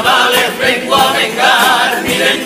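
Carnival comparsa choir singing in harmony, several voices together.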